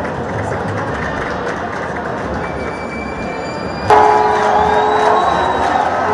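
Football stadium crowd noise that jumps to much louder cheering about four seconds in, with long held horn notes sounding over it.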